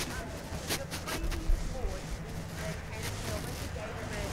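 Faint, distant voice of a person asking a question away from the microphone, over the steady low hum of a large hall. A few soft knocks come in the first second and a half.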